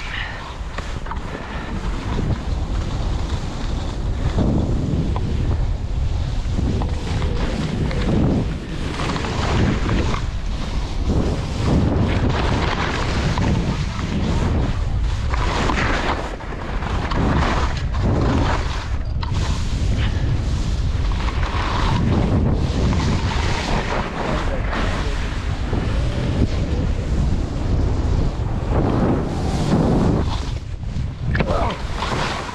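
Wind buffeting the microphone of a moving skier's camera, with the hiss of skis sliding through soft snow, swelling and fading every second or two.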